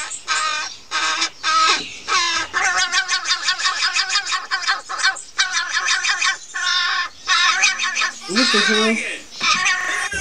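A crow squawking harshly again and again in a rapid string of short, raspy calls, with a few brief pauses, as a finger prods at it.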